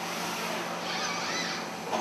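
Steady machinery hum and hiss of a plastic injection-moulding factory floor, with a brief wavering whine about a second in.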